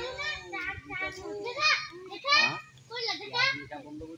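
Several high-pitched voices, children's by their pitch, talking and calling out in quick overlapping bursts.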